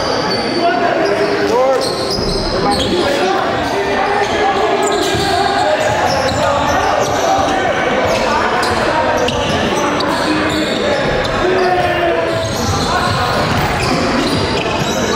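Basketball game sound in a gymnasium: a ball bouncing on the hardwood floor amid players' voices, echoing in the large hall.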